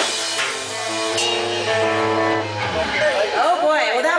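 A live rock band's song ending on a long held chord with a deep bass note, cutting off about three seconds in, followed by the crowd cheering and shouting.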